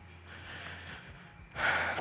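A quick, noisy intake of breath near the end, just before speaking. Under it is quiet room tone with a steady low hum.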